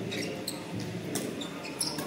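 Badminton doubles rally: a shuttlecock struck by rackets about three times, roughly two-thirds of a second apart, with shoes squeaking on the court floor.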